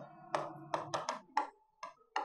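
Pen tip tapping against an interactive display board while handwriting on it: about six short, sharp taps, some with a faint ring after them.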